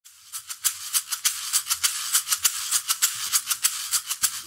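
Opening of a worship song: a percussion shaker keeping a steady rhythm of about five shakes a second over faint low tones, before the guitar comes in.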